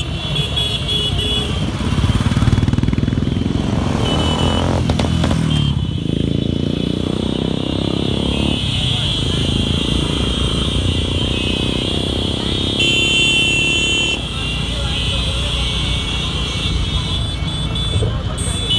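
A procession of many motorcycles riding past at once, their engines running together in a dense rumble, with the pitch of some rising and falling as riders change speed.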